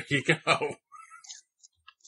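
Speech only: a man's voice in short, rapid bursts, then a brief lull of faint sound.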